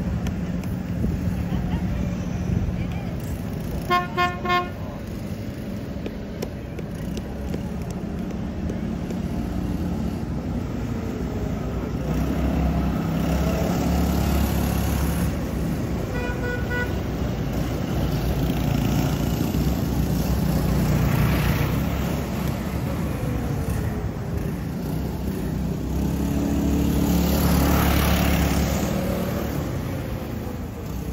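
Parade vehicles driving slowly past with their engines running, the engine noise swelling twice as they come close. Two short car-horn toots sound about four seconds in, and a few quick, higher-pitched horn beeps around sixteen seconds in.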